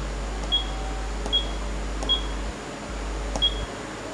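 Photocopier control panel giving a short, high beep with each key press as the subnet mask digits are entered: four beeps, unevenly spaced, over a low steady hum.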